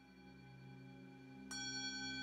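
A bell struck softly at the start and again, louder, about one and a half seconds in, each stroke ringing on over a faint low sustained musical tone. It is rung at the elevation of the host during the consecration.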